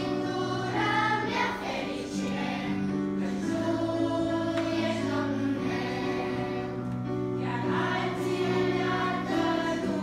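A small children's choir singing a psalm setting in Romanian in unison, over sustained accompaniment chords that shift every second or two.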